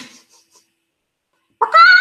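Chicken squawking: a short sharp squawk at the start, then a longer, high-pitched call about one and a half seconds in.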